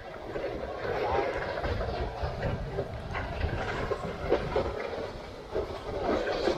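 Wicker sledge on wooden runners sliding down a steep asphalt street: a steady, low scraping noise with scattered small knocks and rattles.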